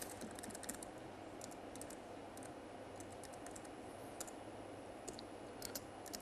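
Faint typing on a computer keyboard: scattered keystrokes in short irregular runs.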